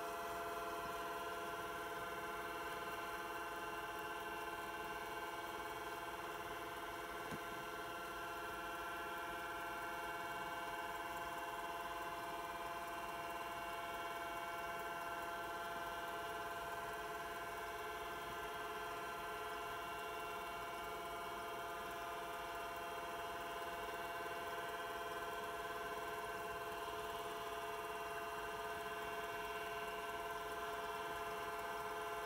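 Apple Lisa 2/10 computer running while it boots from its 10 MB hard drive: a steady hum and whine from the machine's fan and spinning drive, made of several steady tones that hold unchanged.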